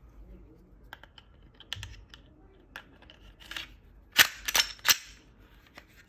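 Glock 43X slide being put back onto the frame: a few light metallic clicks and a short scrape, then three sharp metal clacks in quick succession near the end as the slide is worked on the frame.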